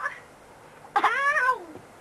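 A young child's single high-pitched call about a second in, rising then falling in pitch and lasting under a second.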